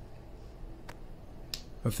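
Two short, sharp clicks over a low room hum, about half a second apart, then a man's voice starts speaking near the end.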